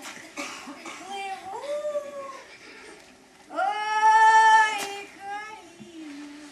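A woman singing unaccompanied in a high voice: two short rising phrases, then a long, loud held note about three and a half seconds in, and a brief phrase after it.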